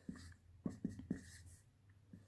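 Felt-tip marker writing on paper: a few short, faint scratching strokes.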